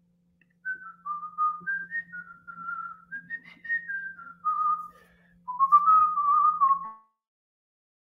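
A man whistling an idle tune through pursed lips, single clear notes stepping up and down, with a short break about five seconds in.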